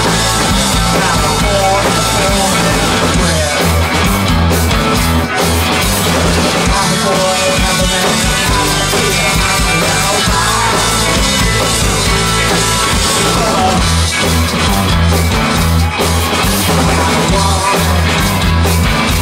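Live rock band playing loud and steady: electric guitars, drum kit and a singer on vocals, heard from the crowd.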